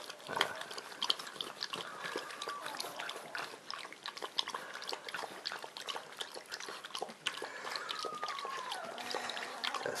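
Five-week-old Saint Bernard puppy lapping water from a stainless steel bowl: quick, irregular wet laps and tongue clicks, over and over.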